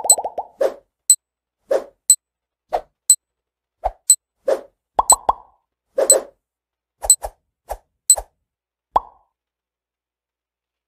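Quiz countdown-timer sound effect counting down ten seconds: a low plop alternating with a short high click, about two sounds a second, stopping about a second before the end.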